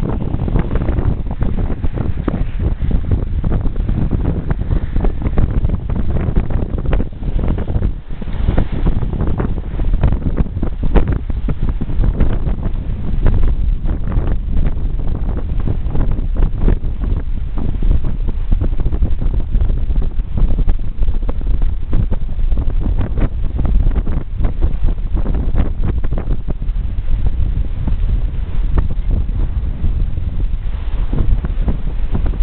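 Strong, gusty wind buffeting the microphone aboard a Grinde double-ender sailboat sailing in a fresh breeze, with water rushing past the hull underneath.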